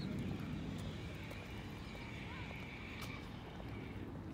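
Outdoor city waterfront ambience: a steady low rumble with faint distant voices and a few faint high chirps.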